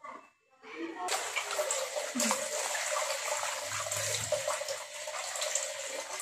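Tap water running steadily into a bowl as cut mushrooms are washed. It starts about a second in.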